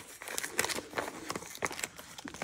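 Clear plastic packaging crinkling and crackling under the hands in irregular small clicks, while fingers pick at its sticker seal.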